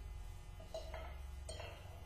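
A few faint metallic clinks as a long steel bar is handled and fitted at the front of a bare small-block engine, over a low steady hum.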